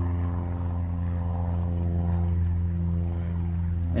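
Background music: sustained ambient tones held steady, with no beat or melody changes.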